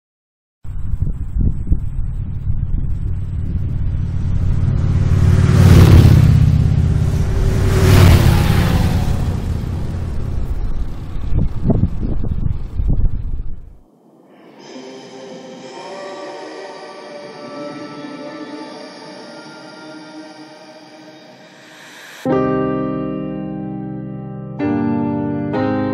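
Motorcycles running past at speed, two loud swelling pass-bys about six and eight seconds in. The engine noise cuts off about halfway through and gives way to soft music of held tones, which turns to plucked notes near the end.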